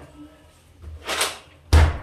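A brief rustle, then a refrigerator door swung shut, closing with a single heavy thud near the end.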